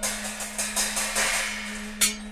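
Free-jazz drum kit playing cymbal crashes and drum strokes, starting at the window's opening, over a steady held low reed note.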